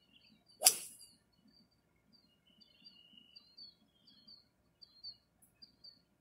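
A golf club swung through and striking the ball off the turf: one sharp crack that dies away within about half a second. Small birds chirp faintly in the background.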